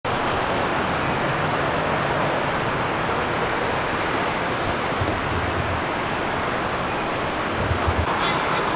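Steady city traffic noise, with a low vehicle rumble swelling briefly about five seconds in and again near the end.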